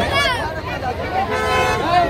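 Voices shouting in an outdoor crowd, with a short car-horn honk a little past the middle.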